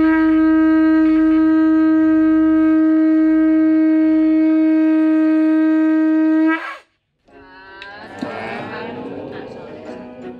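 A conch shell trumpet is blown in one long, steady, loud note that bends up briefly and cuts off about six and a half seconds in. A fainter mix of sounds follows after a short gap.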